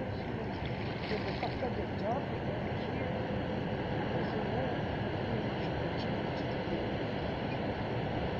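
Steady wind noise on the microphone, with faint distant voices under it.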